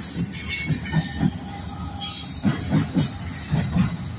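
Freight train rolling past close up: the trailing EMD SD70ACe diesel locomotive and the first loaded flatcar, a steady low rumble with irregular clacks of wheels over the rail joints. There is a faint high wheel squeal.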